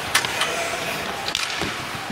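Ice hockey game sound: steady arena crowd murmur, with three short, sharp sounds of play on the ice from sticks, puck and skates.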